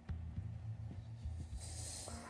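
Quiet, low background music with a pulse about twice a second, a suspense bed under the pause.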